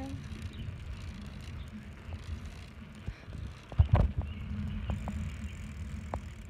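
Steady low wind rumble on a handheld phone microphone, with a cluster of sharp knocks about four seconds in, the loudest sound.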